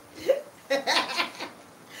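A woman laughing hard in short bursts, loudest about a second in, then dying down near the end.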